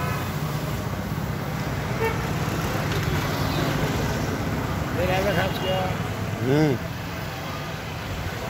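Swaraj 855 FE tractor's diesel engine idling steadily, with people talking over it in the second half.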